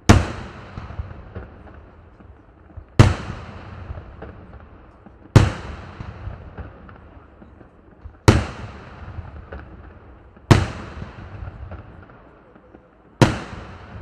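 Daytime aerial firework shells bursting overhead: six loud bangs about two to three seconds apart, each trailing off in an echo, with smaller pops between.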